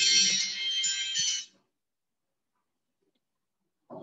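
Electronic chime made of several high bell-like tones sounding together, cutting off suddenly about a second and a half in. It signals the end of a silent meditation sitting. A brief faint sound follows near the end.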